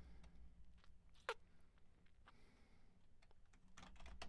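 Near silence: low room hum with a few faint computer-keyboard keystrokes and one sharper click about a second in.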